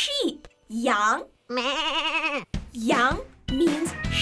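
Cartoon sheep's voiced bleat: one long wavering "baa" in the middle, among short voiced exclamations. Light children's music comes in near the end.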